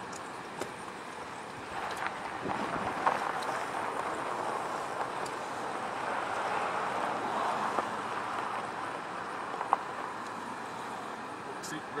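A car passing on the nearby road, its tyre and engine noise swelling over several seconds and then fading.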